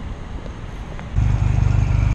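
Honda Rebel motorcycle engine running as the bike rides, a low rumble that gets much louder about a second in.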